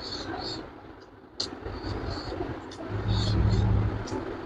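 Close-miked chewing and lip-smacking of a person eating rice and fish by hand, in short wet bursts with a sharp click about a second and a half in. A low rumble swells up near the end and is the loudest sound.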